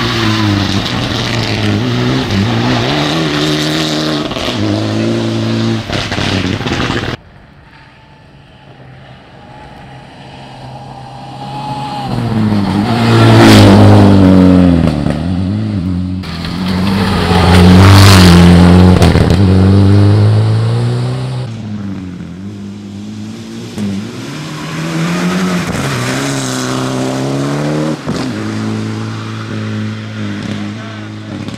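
Rally car engines revving hard through gear changes, their pitch rising and falling. The sound cuts off abruptly about seven seconds in, then a car approaches and passes close and very loud twice around the middle, and engine revving continues near the end.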